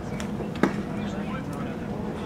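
A pitched baseball popping into the catcher's leather mitt once, a sharp smack about half a second in, over low background chatter.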